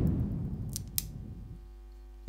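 Two-piece pill capsule being twisted and pulled apart by hand, with two sharp clicks about a second in after a soft low rustle of handling.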